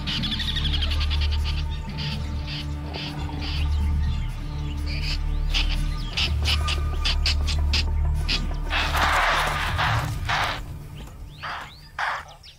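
Tree squirrel's alarm call, rapid repeated clicking chirps warning of a predator, over background music with a steady low drone. Two longer harsh noisy bursts sound about nine and ten seconds in.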